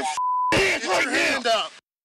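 Censor bleep: one steady, even tone lasting about a third of a second, shortly after the start, masking a swear word in a man's shouted command. The shouting goes on after the bleep and stops shortly before the end.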